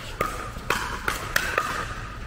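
Pickleball paddles hitting a hollow plastic pickleball in a fast exchange: about five sharp pops, each with a short ringing tail, echoing in a large indoor hall.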